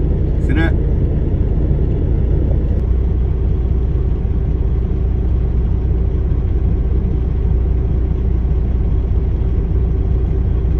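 Steady low rumble of a semi truck's diesel engine idling close by.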